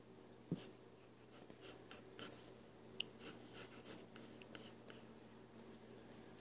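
Faint scratching strokes of a wooden pencil sketching on paper, with a soft knock about half a second in and a sharp tick about halfway through.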